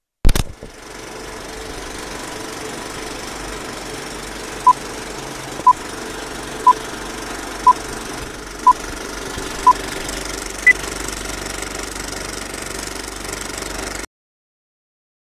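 Old film-projector sound effect for a countdown leader: a sharp click, then steady projector clatter, with six short beeps a second apart and a seventh, higher beep a second after them.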